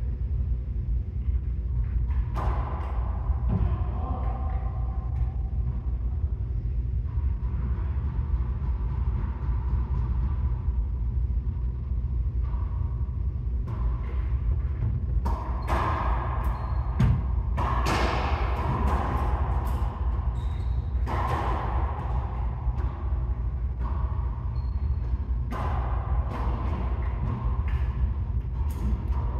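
Racquetball rally: sharp pops of the ball off racquets and the court walls, ringing in the enclosed court over a steady low hum. A few hits come about two seconds in, then a lull, then a quick run of hits through the second half.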